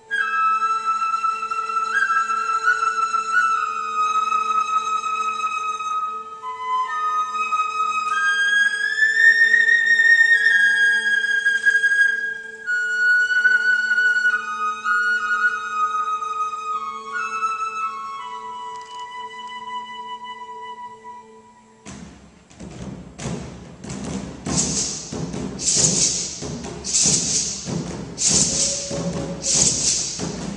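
Music: a solo flute plays a slow melody of held and gliding notes over a steady low drone. About 22 seconds in, it gives way suddenly to a percussion-heavy track with a bright, shaker-like beat about once a second.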